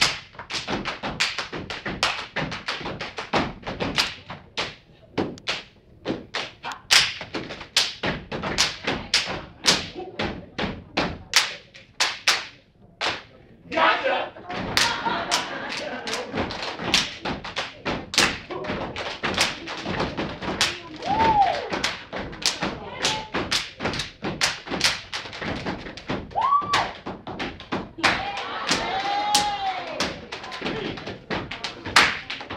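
A step team stepping: rapid rhythmic foot stomps, hand claps and body slaps in quick sharp strikes. Crowd voices join from about halfway, with a few short whistles near the end.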